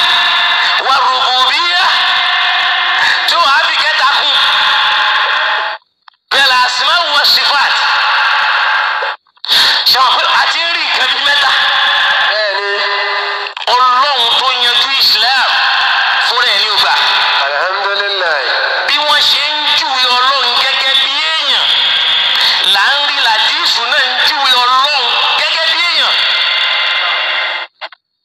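A voice speaking loudly and continuously, thin and tinny as if through a radio or phone line, with two brief breaks about six and nine seconds in; it cuts off just before the end.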